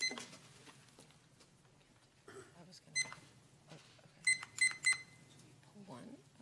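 Short, high electronic beeps: one at the start, one about three seconds in, then three quick ones close together near the end, over low room noise.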